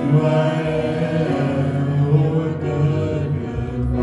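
Worship music: voices singing together in long held notes, gospel style.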